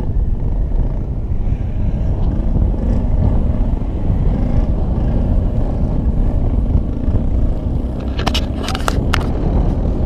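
Airflow buffeting a hand-held camera's microphone in paraglider flight: a loud, steady low rumble of wind noise. A few sharp clicks come near the end.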